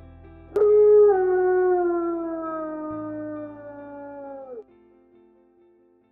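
A wolf's single long howl, starting abruptly, holding a nearly steady pitch that sinks slowly and falls off at the end, over soft background music.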